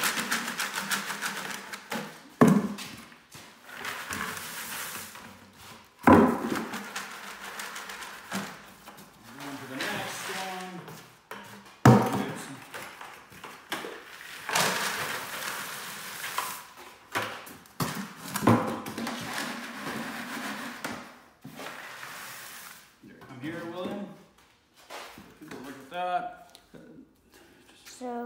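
Dry bait mix of popcorn, corn kernels and sugar-coated candy corn pouring from one plastic five-gallon pail into another, a rattling, rushing pour. It comes several times, each pour starting with a knock of the pail rims.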